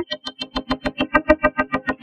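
A fast repeating plucked, distorted note, about eight a second, run through a spectral image filter whose notches change the tone as its Pow control is swept; the notes thin out briefly just after the start.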